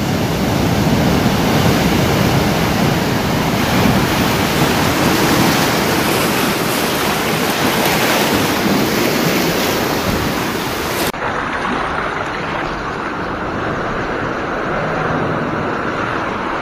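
Ocean surf breaking and washing over shoreline rocks: a loud, steady rushing of white water. About eleven seconds in it cuts abruptly to a duller, quieter rush.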